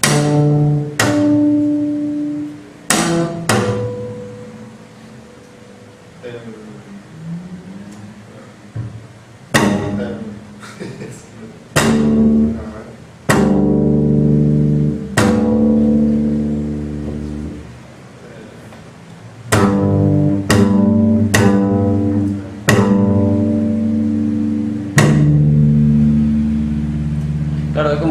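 Double bass played pizzicato on natural harmonics: a series of plucks, each a sharp attack followed by a clear ringing note, some left to ring for several seconds.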